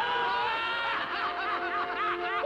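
A group of cartoon ghosts snickering together: a quick run of short, high giggles.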